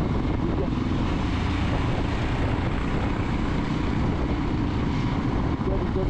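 Royal Enfield Himalayan single-cylinder motorcycle riding at steady speed, its engine running under a steady rush of wind noise on the helmet camera.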